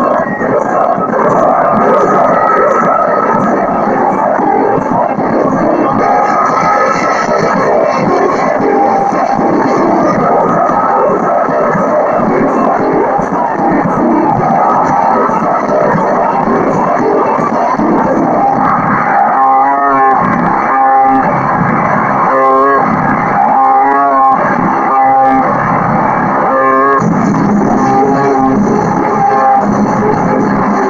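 Loud rock music with guitar. About two-thirds of the way in, a pitched phrase starts repeating roughly once a second.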